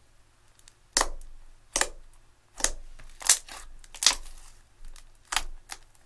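Thick purple slime being pressed and squished by hand, giving a string of sharp wet clicks and pops, about one a second, starting a second in.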